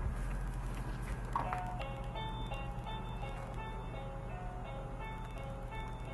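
A simple electronic lullaby tune, one beeping note at a time, from a baby cradle's built-in music unit. It starts about a second and a half in, over a steady low hum.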